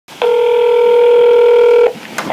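A telephone line tone: a single steady electronic beep, held for nearly two seconds and cutting off abruptly, just before the call connects.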